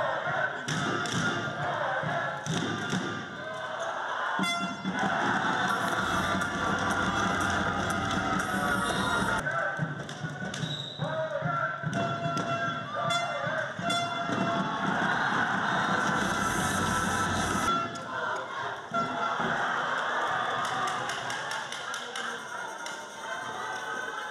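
Indoor handball arena sound: crowd noise and music, with the handball bouncing on the court floor. The mix changes abruptly three times, at about 4.5, 9.5 and 18 seconds in.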